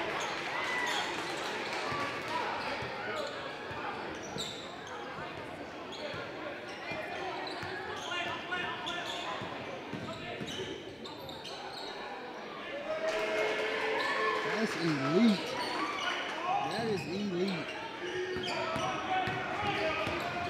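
Live gym sound of a basketball game: a basketball dribbling on the hardwood court, with indistinct shouts and crowd chatter echoing in the hall, growing louder in the second half.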